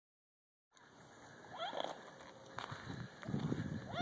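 A dog wading in shallow lake water, with faint sloshing around it and a few short gliding animal calls, about a second and a half in and again near the end.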